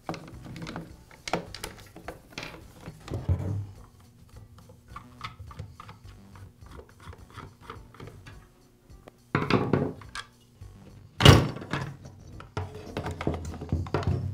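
Clicks, scrapes and knocks of a screwdriver and plastic chainsaw parts as the top handle is unscrewed and lifted off a Poulan chainsaw, the saw body shifted and turned on a wooden workbench. There is a cluster of knocks just before ten seconds in, and the loudest single thunk comes about eleven seconds in.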